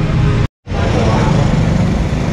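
Busy street ambience: steady traffic and motor noise with background voices, broken by a brief gap of silence about half a second in.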